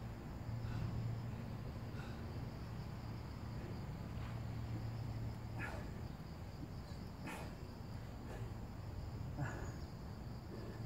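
A steady, high-pitched drone of insects over a low, steady hum, with three short, sharp sounds in the second half.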